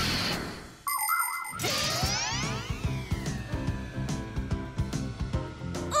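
Cartoon transition sound effects: a whoosh at the start, bright ringing chimes about a second in, and a sweeping glide, followed by background music with a slowly falling tone.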